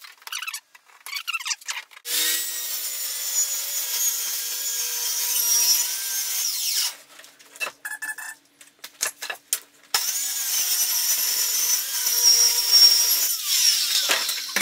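Handheld circular saw ripping a sheet of plywood lengthwise, cutting in two runs of about five and three seconds. A string of clicks and knocks falls between the two runs.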